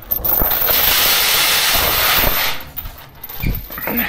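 Steel mesh trailer ramp gate being lifted on its chains: a loud rattling, scraping metal noise lasting about two and a half seconds, then a single thump about three and a half seconds in.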